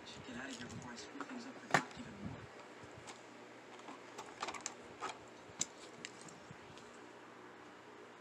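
Light clicks and taps of a diecast toy truck and a clear plastic packaging tray being handled. The sharpest click comes just under two seconds in, and a cluster of clicks follows around four to six seconds in. A faint voice is heard in the first second and a half.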